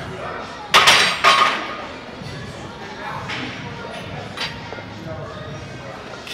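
Loaded barbell set back onto the steel hooks of a squat rack: two sharp metal clanks about half a second apart, about a second in, with the plates ringing, then a couple of fainter knocks.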